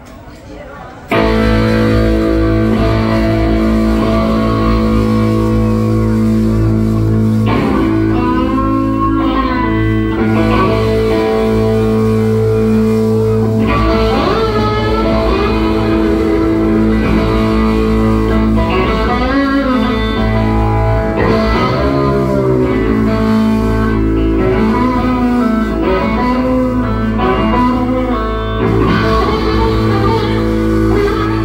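Homemade electric guitar built from three pieces of wood and a license plate, played loud in a blues style through an amp, starting suddenly about a second in: a droning low note held under sliding, bending notes.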